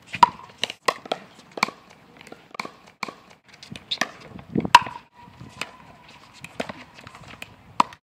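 Pickleball rally: paddles striking a plastic pickleball in a quick exchange of volleys, a series of sharp hollow pocks roughly every half second, the loudest a little past the middle.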